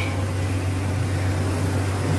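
A steady low mechanical hum under a wash of noise.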